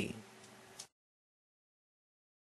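Near silence: the last spoken word trails off into faint room hiss, which cuts off abruptly to dead digital silence just under a second in.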